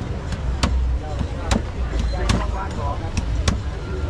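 Large knife chopping into a young green coconut on a wooden chopping block: about six sharp strikes at uneven intervals as the top is cut open, over a low hum of crowd chatter.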